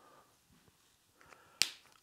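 A single sharp click about one and a half seconds in, with a few faint small ticks of handling before it.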